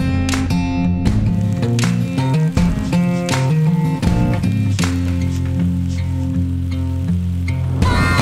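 Background music: a bass-heavy groove with held notes that change every half-second or so over a steady beat.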